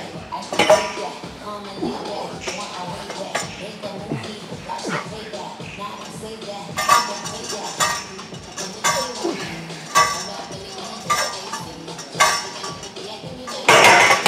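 Iron weight plates clinking and rattling on a loaded Kabuki specialty bar during bench-press reps. In the second half there is a run of sharp metal clanks, about one a second.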